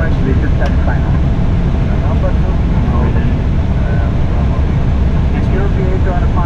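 Airliner flight deck on approach with the landing gear down: a loud, steady low rumble of airflow and engines, with faint voices underneath.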